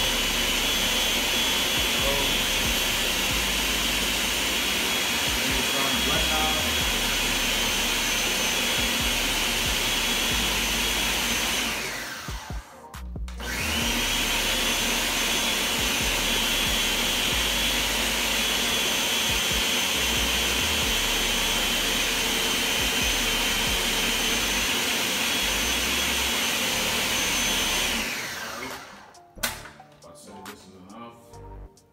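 Countertop blender running at a steady high speed, blending soaked beans with onion, pepper and a little water into akara batter. It stops and winds down about twelve seconds in, starts again a second later, and winds down once more near the end.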